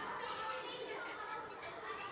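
Young children's voices at play, many talking and calling over one another at once, growing louder as it begins.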